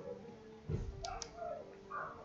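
Two faint clicks of a computer mouse button, close together about a second in, with a soft low thump just before them.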